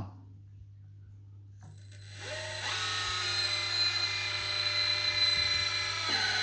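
Electric hydraulic pump of an RC teleloader starting about one and a half seconds in and running with a steady high whine while the telescopic boom extends.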